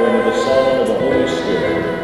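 A group of voices singing a hymn together in sustained notes.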